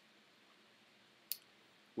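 Near silence with a single short, sharp click about a second and a quarter in.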